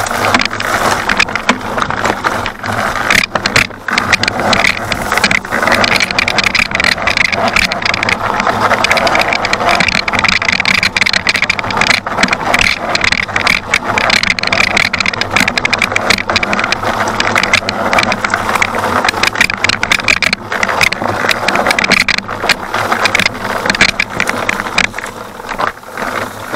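Electric dirt bike riding over a rocky trail: a loud, continuous mix of tyre and chassis noise with dense, rapid knocks and rattles, heard close up from a camera mounted on the rear fender.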